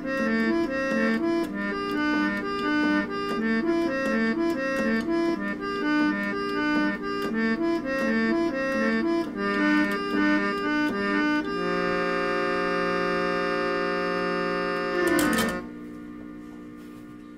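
Small keyboard reed organ playing a repeating pattern of chords, then holding one sustained chord from about eleven seconds in. Near the end the chord's pitch sags downward and the sound cuts off as the song ends.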